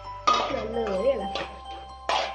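Metal ladle scraping and knocking against an aluminium kadai as chopped tomatoes and sliced onions are stirred, a few short strikes over background music.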